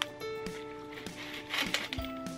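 Soft background music of held notes that shift in pitch about every half second, with a sharp click at the start and another near the end.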